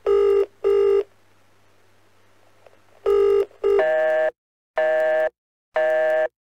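A telephone ringing in two short double rings, then cut short by a repeating on-off beep, about once a second, like a line's busy tone.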